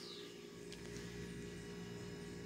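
Faint steady low hum with a light click under a second in.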